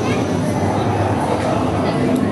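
Roller coaster train rolling slowly along its track, a steady wheel rumble, with voices of people close by.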